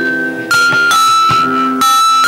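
Jaltarang: porcelain bowls tuned with water and struck with thin sticks. A run of about five struck notes, one every half second or so, each ringing on into the next.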